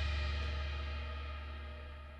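The last chord of a rock track ringing out and fading, a cymbal crash and a low bass note dying away steadily toward silence.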